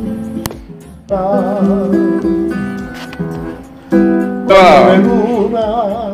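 Nylon-string classical guitar being played, with a voice singing along in long held notes with a wide vibrato, loudest about four and a half seconds in.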